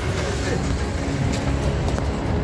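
Steady low rumble of street traffic with indistinct voices of people around.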